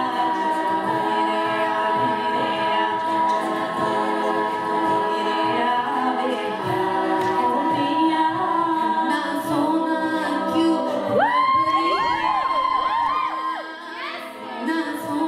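All-female a cappella group singing a Hindi film song medley in close harmony, held chords with a lead melody above. About eleven seconds in, a high note is held while voices slide through ornamented runs around it, and the sound dips briefly just before the end.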